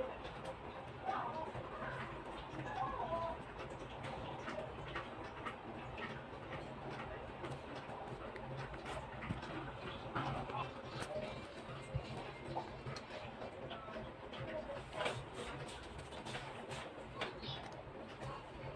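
Faint, indistinct background voices over a low steady hum, with light ticks and scratches scattered throughout.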